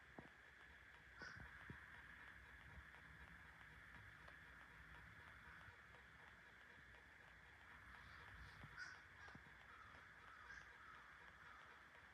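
Faint calls from birds outside: a couple of short calls about a second in, and a few more between about eight and ten and a half seconds in, over a steady low hiss.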